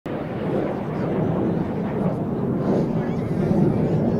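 Steady jet noise from a formation of BAE Hawk jet trainers flying past.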